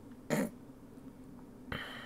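A brief throat noise from a man, then a soft click near the end, over a faint steady low hum.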